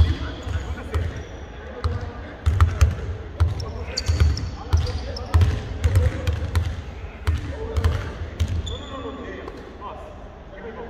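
Basketballs bouncing on a hardwood court as several players dribble, with irregular thuds that often come in quick runs of two or three.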